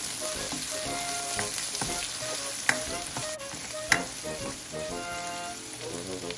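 Sliced onion, garlic, ginger and cherry tomatoes sizzling in hot oil in a nonstick pan as a spatula stirs them, with two sharp knocks a little under three seconds in and at about four seconds.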